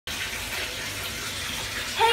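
Bath tap running steadily, filling the bathtub with water.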